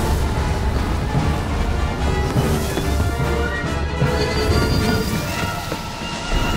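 Dramatic orchestral film score over a deep, continuous low rumble.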